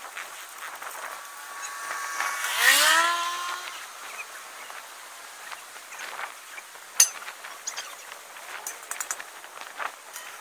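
A vehicle passes close by, its sound swelling and then falling in pitch as it goes past. A single sharp click comes about seven seconds in.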